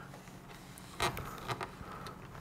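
Faint handling of wires and crimped spade connectors on the back of a rocker switch panel, with a short plastic click about a second in and a couple of lighter ones after.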